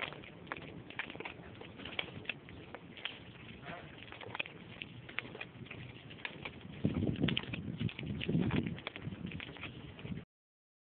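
Footsteps of a person walking on a concrete sidewalk, a run of short sharp clicks, with a louder low rumble from about seven to nine seconds in.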